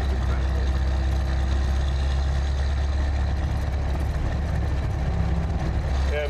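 1928 Isotta Fraschini Tipo 8A's big straight-eight engine and road noise while the car is being driven, a steady low drone with no change in pitch.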